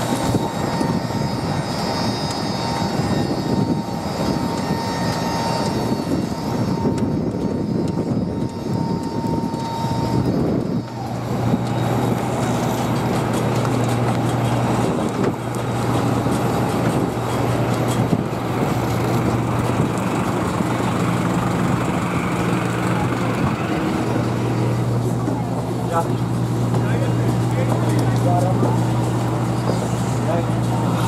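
Steady drone of a parked jet airliner and apron machinery: a low hum with a high whine through the first ten seconds or so.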